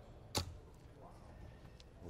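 A single steel-tip dart thudding into a Unicorn Eclipse Pro 2 bristle dartboard, one sharp hit about a third of a second in.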